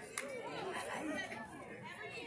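Indistinct chatter of several spectators and players talking at once, with no clear words, plus a short click just after the start.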